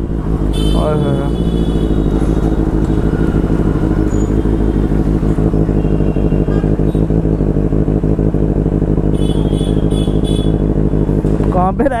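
Benelli 600i motorcycle's inline-four engine with a loud exhaust, running steadily at low revs in slow traffic, a low continuous rumble that neither rises nor falls.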